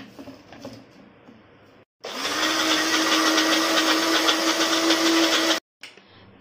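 Small electric mixer-grinder starting up about two seconds in and running with a steady whine for about three and a half seconds, grinding a little wet dosa batter with mango-pickle masala into a paste, then cutting off suddenly. Before it, faint clicks and knocks as the jar is fitted onto the base.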